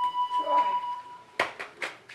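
A held flute note in background music fades out about halfway through. It is followed by a quick run of sharp taps or knocks, about four a second.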